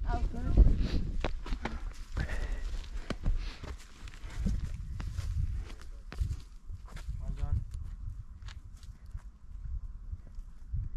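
Footsteps and trekking-pole taps of people hiking up a steep grassy hill path, with irregular clicks and knocks over a low rumble.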